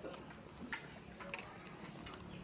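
Thin plastic bottle squeezed in a child's hands, giving a few faint, scattered clicks and crackles.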